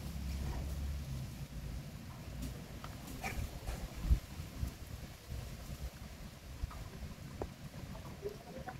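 Faint outdoor ambience: a low, uneven rumble with a few soft, scattered clicks and taps, including one at about four seconds and another near the end.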